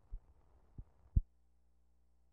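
Three low thumps on an old film soundtrack, the last the loudest, as the film runs through a splice into blank leader; then a faint, steady low hum.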